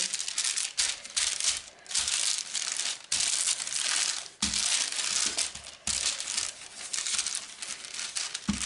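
Baking parchment crinkling and rustling as a wooden rolling pin is pushed back and forth over it, flattening the dough underneath, in repeated strokes about a second long.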